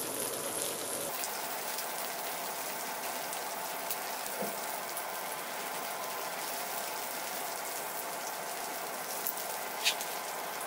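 Hot steel scimitar blade quenched in a tray of oil: the oil sizzles and crackles steadily around the blade as it burns on the surface, with scattered small pops and a sharper pop near the end.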